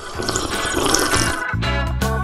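Gulping, slurping sounds of a chocolate milk drink being drunk from a glass, lasting about a second and a half, over background music.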